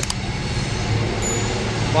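Steady low machinery hum over an even rush of background noise, with a brief faint high tone about a second in.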